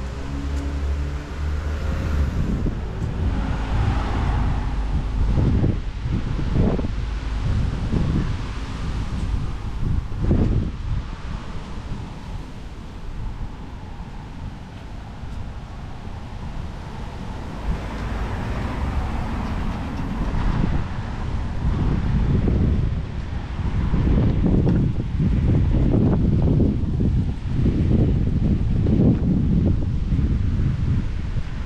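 Wind buffeting the microphone of a camera on a moving bicycle, coming in gusts that grow heavier in the second half, over light street traffic.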